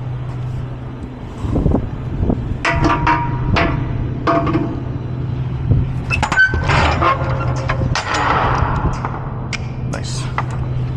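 Metal clanks and ringing clangs as a semi-trailer's rear swing-door lock handle and rods are worked and the door is swung open. Under them runs the steady hum of the truck's idling engine.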